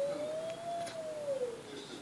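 A single long, pure whistle-like note that glides slowly up and then back down in pitch, ending just before the end.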